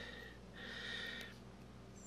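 A faint breath, about half a second in and lasting under a second, over a low steady hum.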